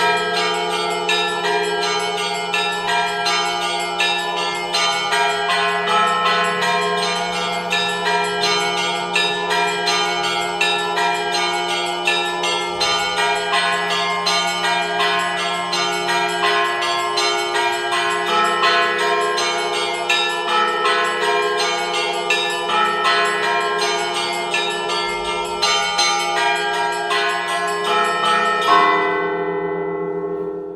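Church bells ringing: several bells struck in quick, overlapping succession over the long hum of a deep bell. A louder strike comes shortly before the end, and the ringing begins to die away.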